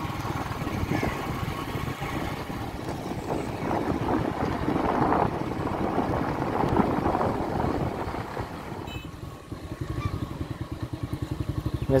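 Motorcycle engine running while the bike is ridden. Near the end it eases off and settles into a slower, evenly pulsing beat.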